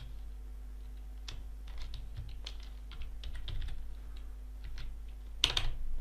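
Computer keyboard being typed in short irregular runs of keystrokes, with a louder cluster of strokes about five and a half seconds in, over a faint steady hum.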